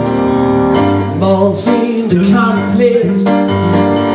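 Live music from a keyboard and an electric bass: held chords over a steady bass line, with a melody line that bends in pitch from about a second in.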